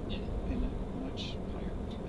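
Steady low road and tyre rumble inside the cabin of a moving Tesla Model 3, an electric car with no engine note, with a short 'um' from the driver at the start.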